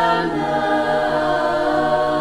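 Bulgarian women's folk choir singing a cappella, holding a sustained chord in close harmony that steps down to a lower chord about a third of a second in.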